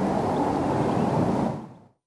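A steady, low, noisy outdoor rumble, fairly loud, with no distinct blasts or tones. It fades out about one and a half seconds in.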